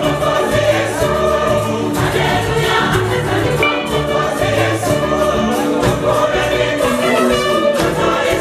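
Large church choir singing a gospel-style Christmas song in full harmony, backed by a live band of drum kit, guitars, keyboard and saxophone over a steady bass line and beat.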